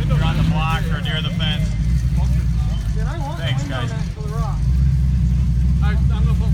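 Off-road vehicle's engine running as a steady low drone while it drives the dirt practice course.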